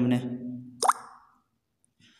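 A man's voice ends a word, then about a second in comes a single short plop that sweeps quickly upward in pitch.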